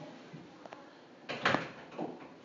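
Quiet room tone with a faint click a little before halfway and a brief rush of noise about one and a half seconds in.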